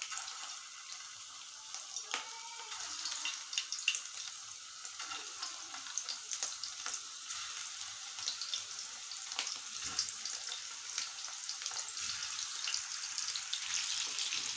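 Raw beef kofta meatballs deep-frying in hot oil, a steady sizzle full of small crackles that gets a little louder as more meatballs go in.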